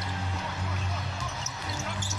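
Basketball game broadcast sound during live play: arena crowd noise and a ball being dribbled on the hardwood court, over a steady low hum of music.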